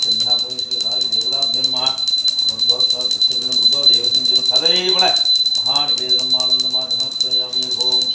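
Small brass puja hand bell (ghanti) rung rapidly and without pause, a bright, steady ringing. A man's voice chants mantras over it.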